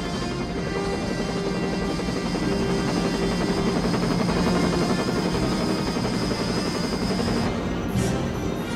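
Background music with a helicopter's rotor and engine running beneath it.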